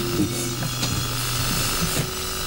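Irregular light mechanical clicks from an old dial clock handled close up, over a steady low hum.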